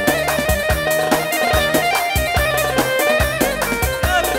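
Wedding band playing instrumental dance music between sung verses: a quick, steady drum beat under a held, wavering melody line.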